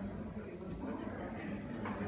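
Faint background voices over a low, steady room hum.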